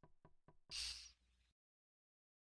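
Faint, quick, evenly spaced clicks, about seven a second, then a short breathy hiss. About a second and a half in, the sound cuts off to dead silence, as when a voice-chat microphone closes.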